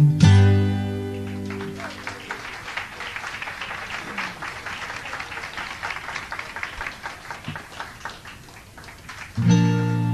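Acoustic guitar's final chord of a song ringing out and fading, then audience applause for about seven seconds. Near the end a guitar chord is strummed again.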